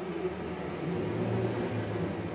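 A steady low rumble with a hiss above it, slightly louder around the middle.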